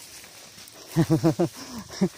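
A man laughing: four quick bursts of laughter about a second in, then a falling voiced sound near the end.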